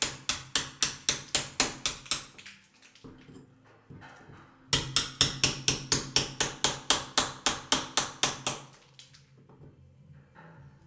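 Small hammer tapping the back of a hacking out knife, chipping old window putty out of the frame around a leaded stained glass panel. Quick, even taps about five a second, in two runs with a pause of about two seconds between them.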